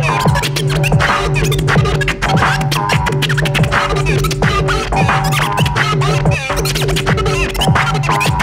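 Turntablist scratching vinyl records on turntables through a Rane battle mixer over a bass-heavy electronic beat, with rapid chopped cuts and back-and-forth pitch sweeps.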